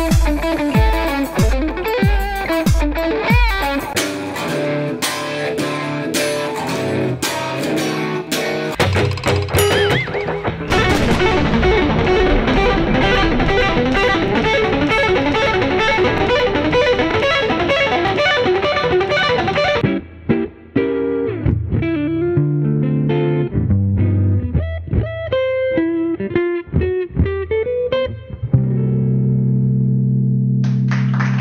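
Electric guitar playing in a montage of passages: quick picked notes over a low pulse at first, then a dense, sustained stretch of notes. About two thirds of the way in it changes abruptly to sparser, separate notes, ending on a held chord.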